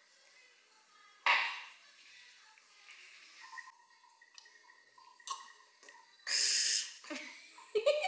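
Drinking water from a glass, with two short, loud, breathy bursts, one about a second in and one near the end. A small child starts laughing at the very end.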